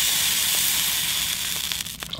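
Melted ghee sizzling steadily in a hot cast-iron pan, fading a little near the end.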